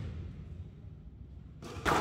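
A squash ball hit hard: one sharp, echoing smack near the end, over a steady low hum of the hall.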